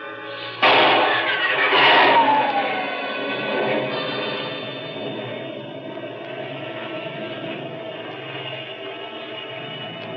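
Radio-drama sound effect of a rocket ship blasting off. It starts suddenly about half a second in with a loud burst and a falling whine, then settles into a steady drone.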